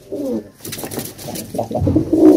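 Domestic pigeons cooing softly in the loft.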